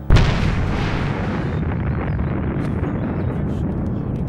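A sudden loud boom, followed by several seconds of deep rumbling that slowly fades.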